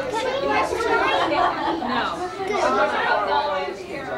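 Several voices talking over one another, children among them: indistinct chatter.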